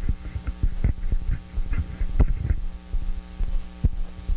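Steady electrical mains hum from the room's sound system, with irregular low thumps and knocks of a microphone being handled.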